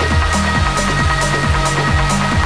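Trance dance music: a steady four-on-the-floor kick drum at a little over two beats a second, with off-beat hi-hats and a held synth pad.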